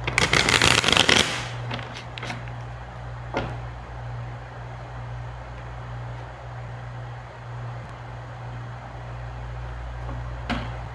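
Deck of tarot cards riffle-shuffled, a dense fluttering crackle lasting about a second, followed by a few faint card ticks.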